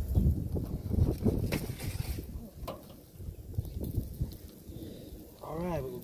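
Wind buffeting the microphone in a low rumble, strongest in the first two seconds, with a few sharp clicks and knocks as a temperature probe is handled over the grill grate.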